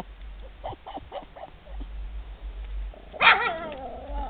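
Small dog at a wooden fence giving a few short, faint yips, then about three seconds in a loud drawn-out cry that falls in pitch.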